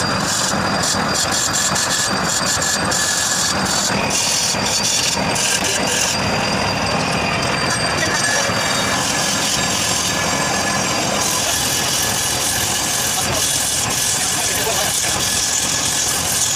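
Wood lathe running steadily while a hand chisel cuts into the spinning wooden workpiece, giving a continuous rough, scraping machine noise.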